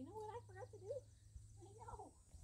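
A woman's high, sing-song cooing voice without clear words, a wavering phrase about a second long at the start and a shorter one near the end.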